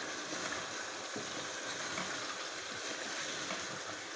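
Chicken pieces steadily sizzling in desi ghee in a pot while being stirred with a spatula, at the frying (bhuna) stage just after the ground spices have gone in.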